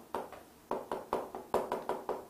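Chalk writing on a blackboard: a quick, irregular run of sharp taps and clicks as each stroke of the characters lands on the board.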